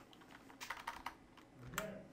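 Faint typing on a computer keyboard: a quick run of key clicks in the first half as a function name is typed into a spreadsheet formula, with a short low hum of a voice near the end.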